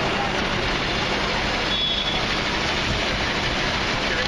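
Refuse truck running with a steady low hum as its Terberg hydraulic bin lifter raises a four-wheeled commercial bin to tip it into the rear hopper, with a brief high squeal about two seconds in.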